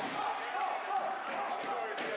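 A basketball bounced on a hardwood court at the free-throw line, over voices talking in the sports hall.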